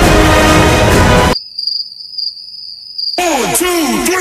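Loud music cuts off about a second in. A steady, high-pitched cricket trill follows for about two seconds, and near the end a quick run of falling-pitch sounds begins.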